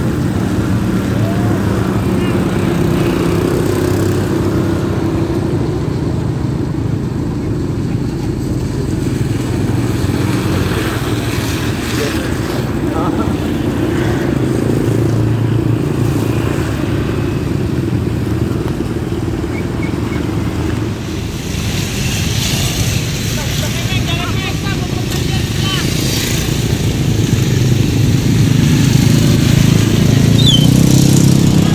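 Steady engine noise of motor traffic, motorcycles among it, passing close by on a wet bridge, with the pitch shifting slowly as vehicles come and go. A hiss in the high range joins in over the last third.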